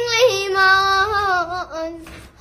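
A young girl singing a Manipuri folk song, emotional and crying as she sings. She holds long, wavering notes that step down in pitch near the end of the phrase.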